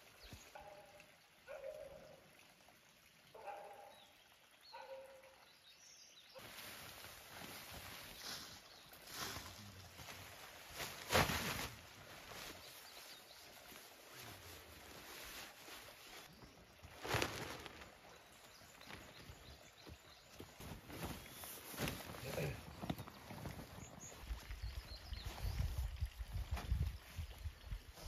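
Nylon tent fabric and stuff sack rustling and crinkling as camping gear is packed by hand, with a couple of louder crinkles and some low handling bumps near the end. A few faint short calls sound in the first few seconds before the rustling starts.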